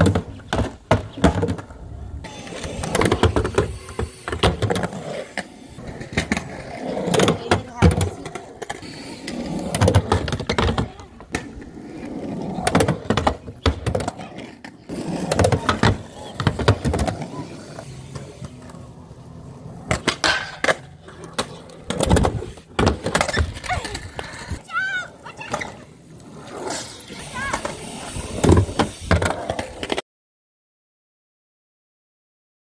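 A skateboard rolling on concrete and riding a small ramp, with repeated clacks and knocks of the board and wheels hitting the ramp and the ground, and voices now and then in between.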